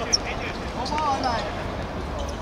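Men calling out to each other across a football pitch, with one sharp thump just after the start.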